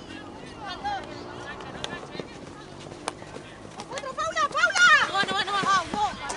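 High-pitched women's voices shouting calls, louder and more urgent in the last two seconds, with a single sharp click about three seconds in.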